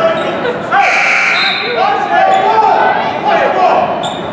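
Drawn-out shouted calls from the crowd and players over general chatter, ringing in a gymnasium, with a basketball bouncing on the hardwood floor. There are three long calls: one about a second in, one at about two seconds, and one at about three and a half seconds.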